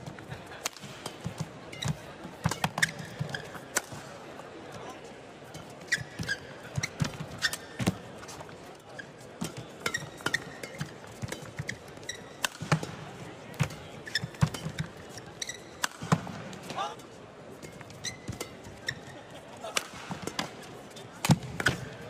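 Badminton rally: the shuttlecock struck again and again by rackets, irregular sharp hits mixed with players' footfalls and brief shoe squeaks on the court floor, over the steady background noise of the arena.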